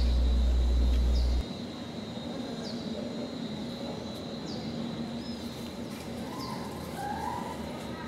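Birds chirping, short falling chirps every second or two, with a warbling call near the end. A loud low hum fills the first second and a half and cuts off suddenly.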